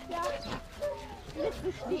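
Puppies giving short vocal sounds amid the chatter of a group of people, as a young cocker spaniel on its lead meets another puppy.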